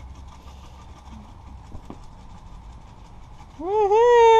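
Feeder crickets being shaken out of a cardboard can, heard as faint, fast, fine ticking over a low steady outdoor rumble. Near the end, a loud drawn-out call that rises and then falls cuts in.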